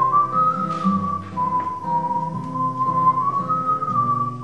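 A man whistling a slow, smoothly gliding melody into the microphone over acoustic guitar chords.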